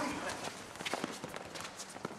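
Faint open-air ambience of a concrete sports court with a few soft, scattered footsteps.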